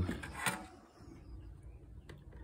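A brief click about half a second in, then faint handling noise of small hand tools being moved on a workbench.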